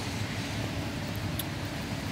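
Steady low rumble and hiss of outdoor background noise, with a faint click about one and a half seconds in.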